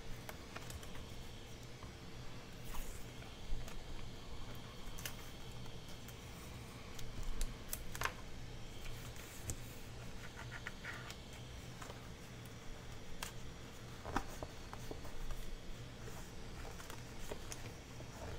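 Faint scratching and scattered small clicks of fingers pressing and rubbing washi tape down along a paper notebook seam, over a low steady hum.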